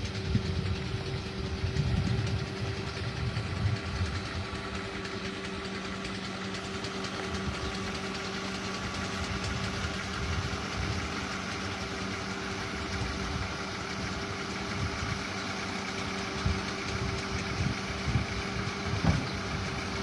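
A motor running steadily, giving a constant low hum with a held tone.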